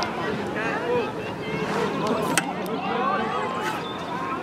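Overlapping, indistinct shouts and chatter of several voices from players and spectators at a youth rugby match.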